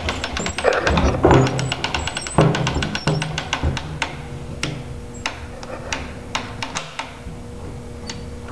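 The crank cocking device on a Barnett Quad 400 crossbow being wound with its clicker safety latch engaged, the ratchet clicking rapidly. After about four seconds it slows to single clicks spaced about a second apart.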